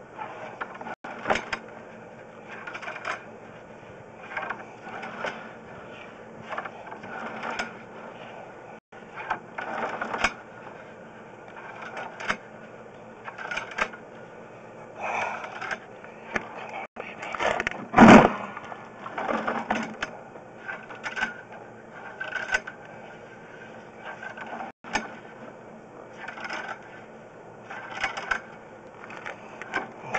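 Sewer inspection camera's push cable and reel being fed into the drain line: irregular mechanical clicks and knocks every second or two over a low steady hum, with one louder knock a little past the middle.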